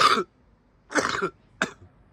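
A person coughing: three harsh coughs, one at the very start, one about a second in, and a short one just after it.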